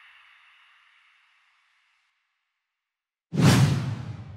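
Logo-animation whoosh sound effects. One whoosh fades away over the first second or two. After a stretch of silence, a second, louder whoosh with a deep low part starts suddenly near the end.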